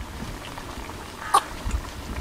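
Steady background noise with one short, high animal call about a second and a half in.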